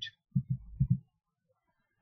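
A few soft, low thumps in quick succession, lasting about the first second.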